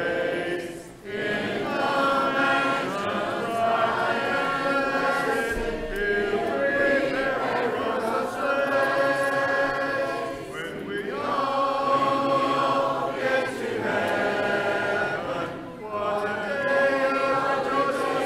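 Congregation singing a hymn a cappella, without instruments, in long held lines with brief pauses between phrases about a second in, near ten seconds and near sixteen seconds.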